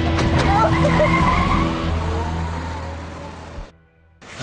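Film soundtrack: a woman's wailing sobs over long, sustained low music notes. It all fades out into a moment of silence just before the end.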